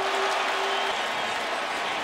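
Stadium crowd cheering and applauding after a big pass completion, an even roar, with a steady held tone that stops about halfway through.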